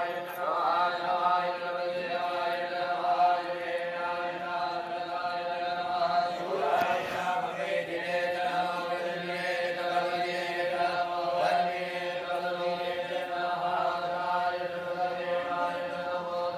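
A group of men reciting a Hindu chant in unison over microphones, a continuous near-monotone recitation held on one pitch.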